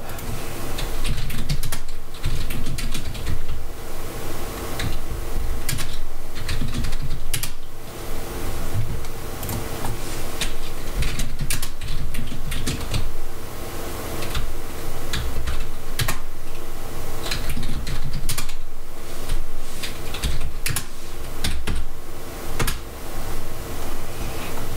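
Typing on a computer keyboard: quick runs of keystrokes with short pauses between them, over a faint steady hum.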